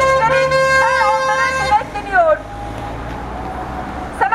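A vehicle horn held in one steady tone for nearly two seconds, then cut off. After it comes the low rumble of passing traffic.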